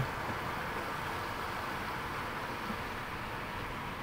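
Steady, even car-cabin noise of a car rolling slowly, with no distinct events.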